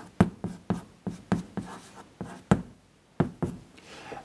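Chalk writing on a blackboard: a run of about a dozen sharp taps as the chalk strikes the board stroke by stroke, a few a second, with a short pause about three seconds in.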